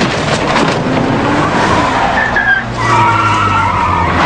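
A few sharp knocks in the first second, then a car pulling away hard: its engine running under load and its tyres squealing as they spin on gravel.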